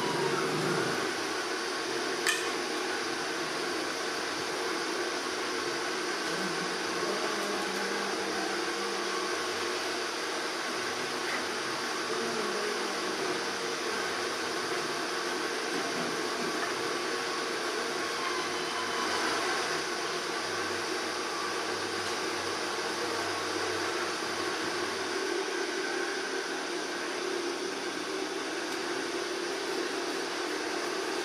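Steady mechanical hum and hiss, like a running fan, with one sharp click about two seconds in.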